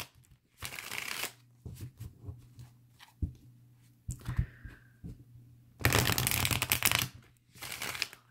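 A tarot deck being shuffled by hand, split into two halves and worked together: a short burst of riffling about half a second in, small taps and card slides in the middle, and a longer, louder stretch of riffling about six seconds in.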